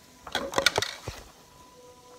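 A quick run of knocks and clatters, starting about a third of a second in and lasting under a second, from handling in the kitchen.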